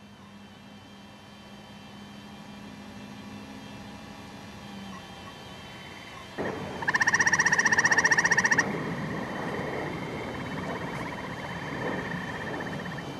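A frog's loud pulsed trill, a fast run of buzzy pulses lasting about a second and a half just past the middle. Fainter trilling goes on behind it afterwards.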